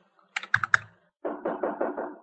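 A few sharp clicks about half a second in, then a quick run of muffled taps, about four a second, heard through a phone-call recording.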